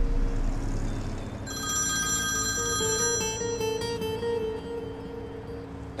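Mobile phone ringtone playing a melody, starting about a second and a half in, over soft background music.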